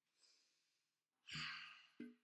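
A woman's long, breathy exhale, a sigh, starting about a second in and fading out, after a faint breath early on.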